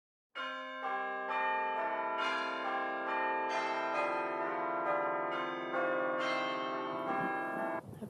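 Bell chimes playing a tune, with a new note struck every half second or so and each left ringing over the others. It cuts off suddenly just before the end.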